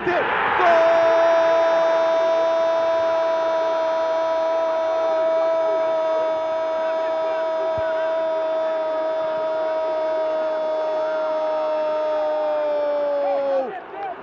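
A Brazilian TV football commentator's long held goal cry, 'Goooool!', one sustained note of about thirteen seconds that sags slightly in pitch just before it breaks off.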